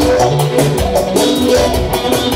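Lively dance music from a band: a fast, steady drum beat under a melody with sliding notes.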